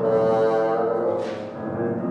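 Bassoon and grand piano playing a classical piece together, the bassoon holding sustained notes over the piano; the sound dips briefly about a second and a half in.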